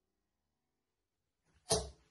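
Near silence, then one short, sharp sound near the end that dies away within a moment.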